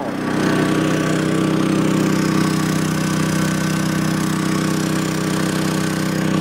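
Portable generator engine chugging along steadily under load from the RV's furnace, a constant even hum at an unchanging speed.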